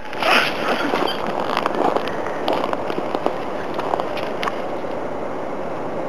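Skis sliding and scraping over snow, a steady rough hiss dotted with small crackles.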